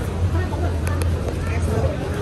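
Indistinct chatter of people in a busy food court, over a steady low rumble.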